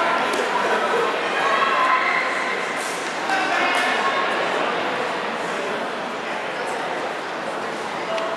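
Crowd of spectators and coaches in a large gym hall, many voices chattering and calling out at once, with short shouts standing out, slightly louder in the first half.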